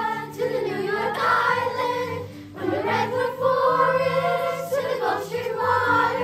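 A children's choir singing a song together, with sustained low notes beneath the voices.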